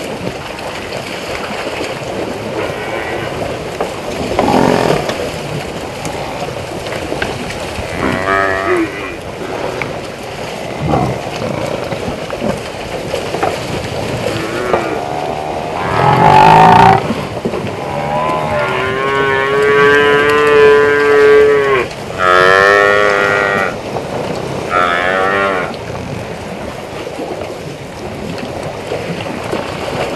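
Cape buffalo in a herd lowing: several calls from about a quarter of the way in, the longest a held call of about three seconds just past the middle, over a steady background noise.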